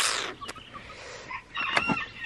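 Young chickens, Black Copper Marans and olive egg layers, clucking, with a few short high calls near the end. A brief rustling noise at the very start is the loudest sound.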